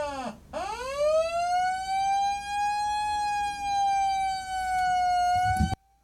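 A single high, siren-like wailing tone: it dips sharply in pitch about half a second in, swoops back up and holds steady for about five seconds, then cuts off abruptly.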